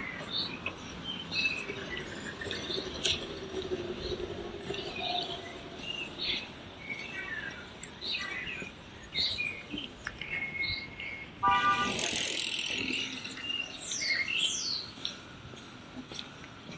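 Small birds chirping and calling in the trees: many short chirps, with a few quick falling whistles near the end. About twelve seconds in, a brief louder burst of noise stands out over the birdsong.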